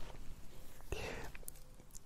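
A man's faint breath, a short, soft, breathy sound about a second in, in a pause between his words.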